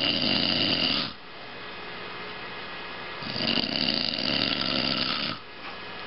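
A man snoring loudly with his mouth open while asleep: one snore ends about a second in, and after a pause of about two seconds comes another snore lasting about two seconds.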